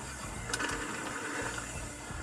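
A steady rushing noise of wind and tyres on a dirt trail, played back from a mountain bike ride video. It is heard at a moderate level, with a faint click about half a second in.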